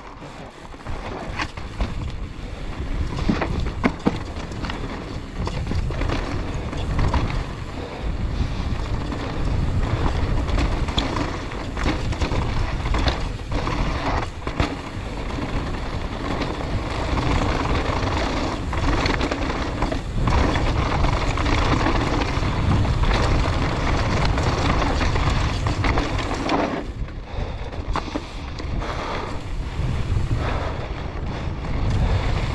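Mountain bike descending a loose, rocky dirt trail at speed: wind buffets the microphone while the tyres crunch over gravel and the bike rattles with frequent sharp knocks over rocks and bumps.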